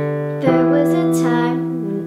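Electronic keyboard piano playing held chords, a new chord struck about half a second in and fading, with a girl's voice singing softly over it.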